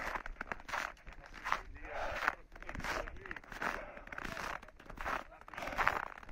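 Footsteps crunching on snow at a steady walking pace, about one step every 0.7 seconds.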